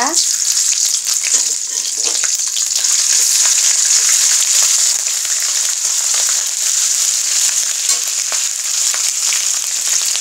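Green chilies and whole spices sizzling in hot oil in an aluminium karai: a steady high sizzle with small crackles, stirred with a metal spatula that clicks and scrapes against the pan.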